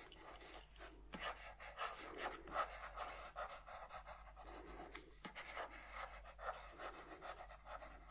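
Pen writing on paper close to the microphone, a series of short faint scratching strokes, with soft breathing in between.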